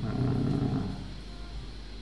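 A man's low, drawn-out hesitation hum lasting under a second, fading into quiet room tone with a steady low hum underneath.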